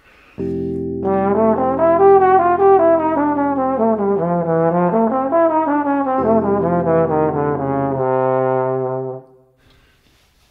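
Trombone playing a jazz practice line over a held backing chord: an arpeggio of the chord's upper structure filled in with chromatic passing notes, moving up and down in quick steps. The backing chord comes in about half a second in, shifts once about six seconds in and stops at eight seconds. The trombone holds a final note and stops about a second later.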